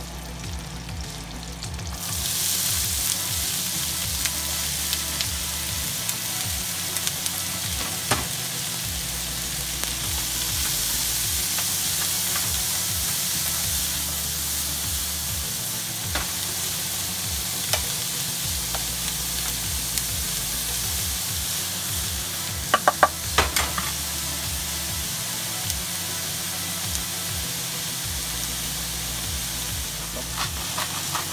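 Chopped onions frying in melted butter in a skillet: a quieter butter sizzle jumps to a loud, steady sizzle about two seconds in and holds. A wooden spoon stirs through it, with scattered clicks and a quick run of knocks against the pan about three-quarters of the way through.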